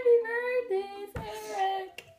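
A young woman's voice singing a short tune in held notes that step up and down, with a brief noisy break about a second in.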